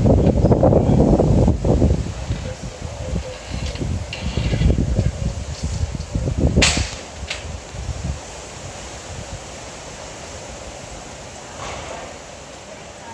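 Gusty wind buffeting a phone microphone during a rainstorm, loudest in the first two seconds and easing off after about eight seconds into a steady hiss of rain. A sharp crack comes about six and a half seconds in, with a smaller one just after.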